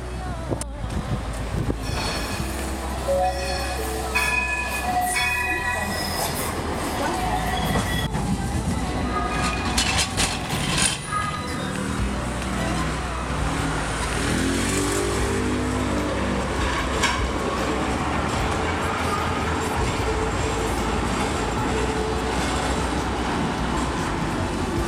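Modern street tram passing close by on its rails: a steady rolling rumble and hiss that fills the second half, over busy street noise with voices.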